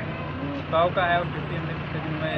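A man's voice speaking a brief phrase a little under a second in, over a steady low hum.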